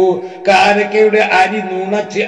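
A man's voice chanting a religious recitation in a melodic intonation with long held notes, briefly pausing about a third of a second in.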